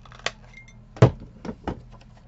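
A hand-held corner rounder punch clicking as it is squeezed through card stock: four short, sharp clicks, the second, about a second in, the loudest.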